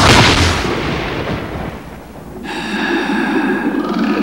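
Trailer sound effect: a loud boom hits at the start and fades away over about two seconds, then a steady eerie drone of several held high tones over a low hum comes in just past halfway.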